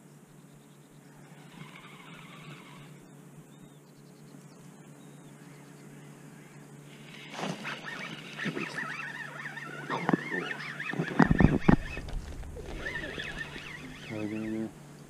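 Quiet open-air background, then, from about seven seconds in, birds calling repeatedly with goose-like honks. Loud knocks and bumps come between about ten and twelve seconds in.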